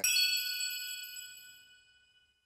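A single bright bell-like chime struck once, ringing out and fading away over about two seconds: the sound sting of a closing logo card.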